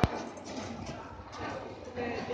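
A sharp click right at the start, then the background murmur of distant voices and room noise in a large hall.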